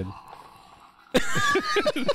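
A Grumbly electronic toy, still inside a gift bag, gives a sudden burst of grumbling, voice-like noises about a second in, after a moment of quiet.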